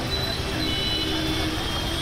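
Road traffic passing through a flooded street: vehicle engines over a steady wash of noise.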